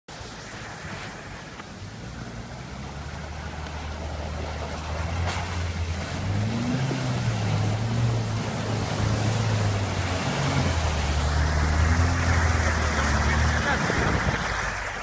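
An off-road vehicle's engine running under load, its pitch rising and falling in steps as it is revved, growing steadily louder over a constant rushing noise.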